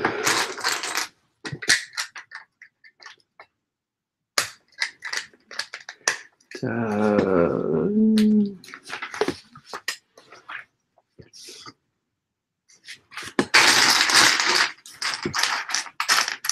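LEGO plastic pieces being handled and set down on a table: scattered sharp clicks and clatters, with a longer run of rattling pieces near the end.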